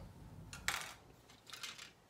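Plastic model-kit parts trees handled on a tabletop: a short light clatter about two-thirds of a second in, then a few fainter clicks.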